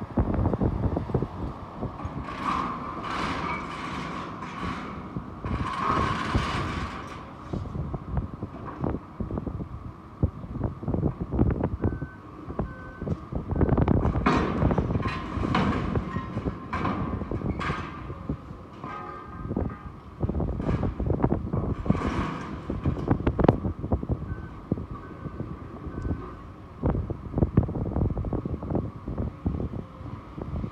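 Hydraulic excavator tearing into a steel conveyor gallery with a demolition attachment: the diesel engine working under load beneath repeated crunching, creaking and clanking of steel being gripped and bent. Twice, three short beeps sound.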